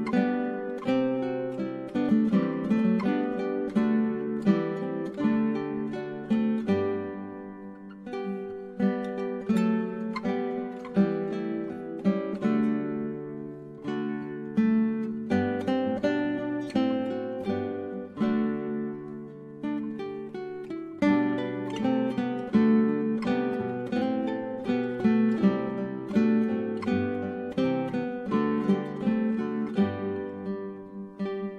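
Acoustic guitar instrumental: a continuous run of plucked notes in flowing phrases, with brief lulls between phrases.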